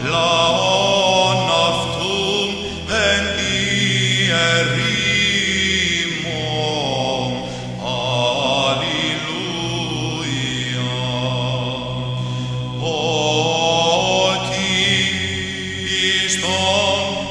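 Byzantine (Greek Orthodox) chant: a slow, ornamented vocal melody moving up and down over a steady held drone.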